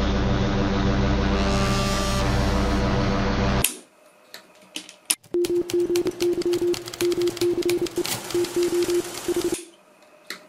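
Sound effects from a homemade Arduino MP3 module played through small built-in speakers. First comes a dense droning hum that cuts off suddenly a little under four seconds in. After a click, rapid irregular clicking runs over a pulsing beep tone and stops shortly before the end.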